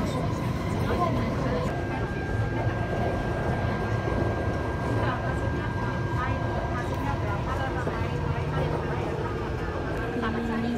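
Taipei MRT metro train running, heard from inside the carriage: a steady low rumble, with a thin high tone held from about two to seven seconds in. Passengers talk in the background.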